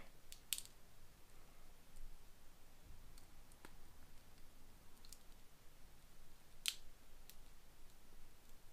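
A few faint, sparse clicks of hard plastic as the rifle accessory is fitted into a Star Wars Black Series 4-LOM action figure's hand, the sharpest click about two-thirds of the way through.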